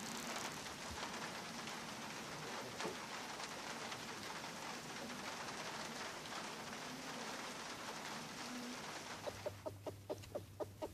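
A faint, steady hiss of outdoor background. Near the end a rooster starts clucking in quick, even calls, about four a second: the food call a rooster gives to summon his hens to something edible he has found.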